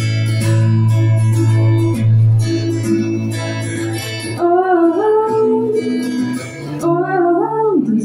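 Live song by a woman singing and strumming a steel-string acoustic guitar. Strummed chords ring for the first half, and sung phrases come in about halfway through and again near the end.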